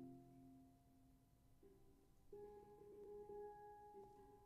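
Triple guitar steel pans played softly in a slow solo: mellow mid-low notes struck and left to ring, with new notes about one and a half and two and a half seconds in.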